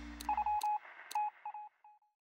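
Sound effects for an animated subscribe bar: rapid groups of short, high electronic beeps, like a chirping dial tone, with three sharp mouse clicks about half a second apart. The tail of the closing music dies away under them within the first second.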